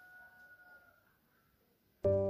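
Near silence: faint room tone with a faint steady high tone that fades out about a second in, then complete silence.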